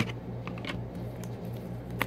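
A few light clicks and ticks of trading cards being handled and shuffled between the fingers, over a steady low hum.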